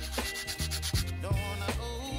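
A tiny balsa wood lure blank sanded by hand against a sandpaper pad, heard with background music that has a steady beat.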